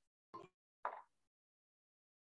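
Two brief handling sounds, short knocks or clunks of objects being picked up and moved on a table, about a third of a second in and again, louder, about a second in; otherwise near silence.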